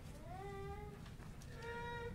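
Two faint, high-pitched cries. The first glides up into a held note lasting about half a second. The second is shorter and a little higher, near the end.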